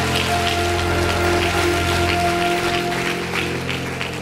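Held keyboard chords sustained under a dense, irregular patter of congregation applause.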